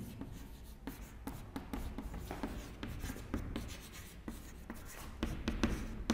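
Chalk writing on a chalkboard: a string of quick, irregular taps and short scratches as the letters are formed.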